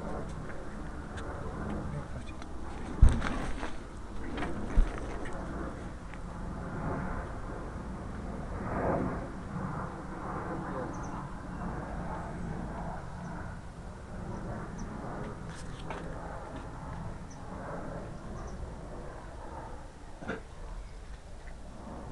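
Indistinct talking with camera handling noise, and two sharp knocks about three and five seconds in.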